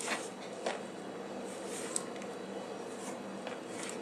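Hands gathering chopped spinach off a wooden cutting board into a plastic tub: soft rustling with a few light taps, over a faint steady hum.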